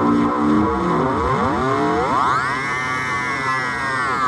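Korg Volca Keys synth played through an Iron Ether FrantaBit bitcrusher pedal as its knob is turned. The result is a dense, gritty tone whose layered pitches glide down and up in crossing sweeps, climbing to a high held band about halfway through.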